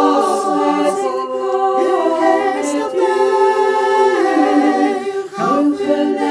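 Small a cappella vocal group singing in Dutch, with no instruments. Sopranos, altos and tenors sing different lines at once in close harmony on held notes, moving to new chords about two and four seconds in.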